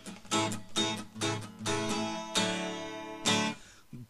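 Acoustic guitar strummed between sung lines: a run of quick strums in the first half, then two longer ringing chords that die away near the end.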